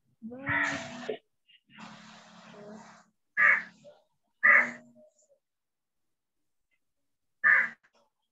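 A bird calling: short harsh calls, two about a second apart midway and a third near the end.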